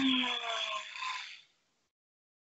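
A person's long voiced breath out, like a sigh, falling in pitch and fading, heard through a headset microphone on a video call and cut off abruptly about a second and a half in.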